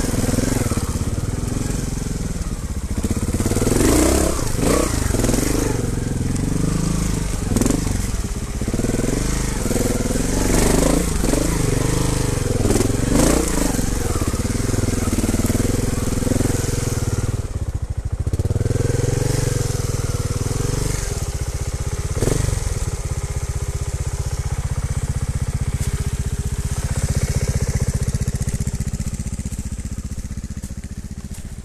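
Trials motorcycle engine close to the microphone, revving up and down repeatedly as the throttle is worked over rough ground. It drops off briefly partway through, then runs more steadily near the end.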